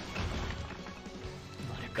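Anime episode soundtrack playing fairly quietly: sustained background music with a crash-like sound effect.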